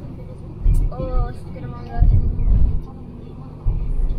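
Road noise heard inside a moving car: a low, uneven rumble with a few heavier thumps.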